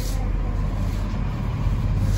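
A steady low rumble with a faint hiss over it, unchanging throughout.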